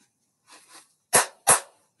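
Two sharp hand claps about a third of a second apart, clapping a pair of quavers, the 'cof-fee' rhythm.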